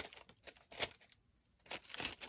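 Paper sticker sheets being handled, a few short rustles and crinkles.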